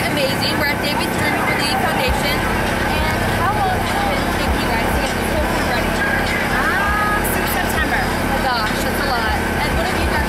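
People talking in conversation over background crowd chatter, with a steady low rumble underneath.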